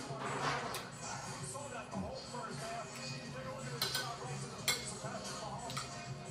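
A spoon and fork clinking against dishes while eating, with a few sharp clinks in the second half, the loudest near the end. A television plays voices and music underneath.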